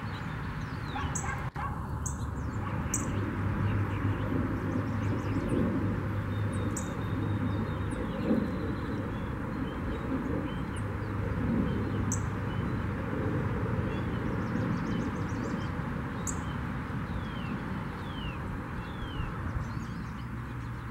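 Small songbirds chirping: short, high chirps and quick down-slurred notes scattered throughout, over steady background noise with a low hum.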